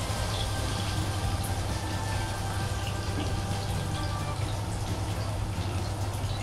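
Fish steaks shallow-frying in hot oil in a nonstick pan, a steady sizzle.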